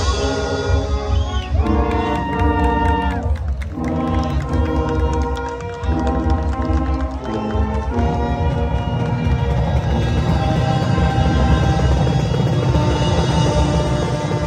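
Youth marching band of brass and percussion playing: sustained brass chords in phrases of a second or two, with short breaks between them, over a steady drum pulse.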